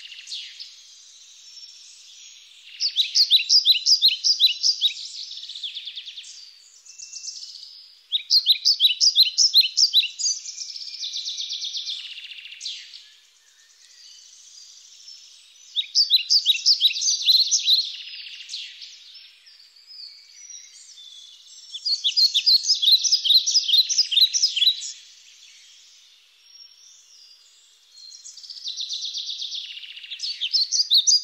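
A songbird singing: phrases of rapid high notes that come again about every five to six seconds, with quieter twittering between them.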